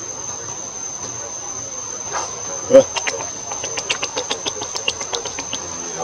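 Steady high-pitched insect drone throughout, with a run of quick clicks about six a second in the second half. A short loud sound breaks in just before halfway.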